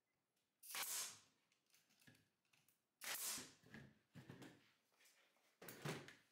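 Cordless brad nailer driving 2½-inch brad nails into pine: three shots about two and a half seconds apart, each sudden and dying away within about half a second.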